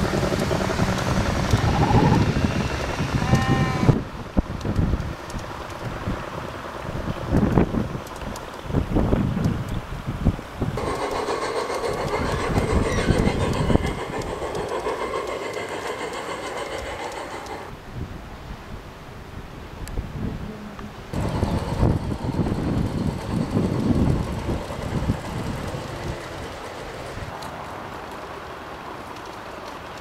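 Garden-scale model trains running on outdoor track, with many small clicks and knocks from the wheels over the rails. The sound changes abruptly several times as the shots change.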